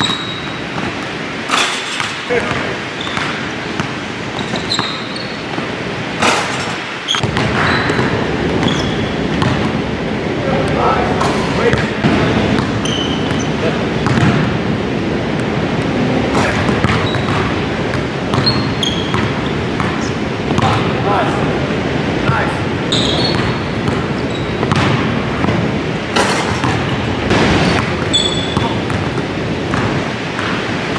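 A basketball bouncing repeatedly on a hardwood gym floor during dribbling and layup drills, with voices in the background; the sound gets louder about seven seconds in.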